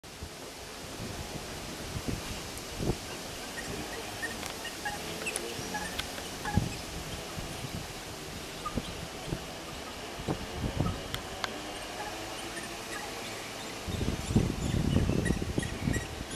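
Riverside ambience: a steady rush of flowing water, with scattered short, high bird calls. Low bumps and rumble come in near the end.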